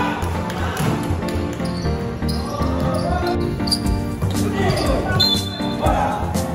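Background music with a steady beat, with basketball bounces and voices from the court under it.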